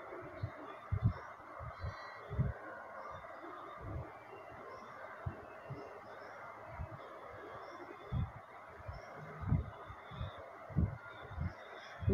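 Salted, sliced bitter gourd being squeezed and rubbed by hand in a bowl to press out its bitter water. Soft, irregular low thumps of handling run over a steady background hiss.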